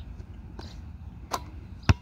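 A basketball shot knocking off the hoop, then, near the end, one loud bounce of the ball on the asphalt court as it comes back from the free throw.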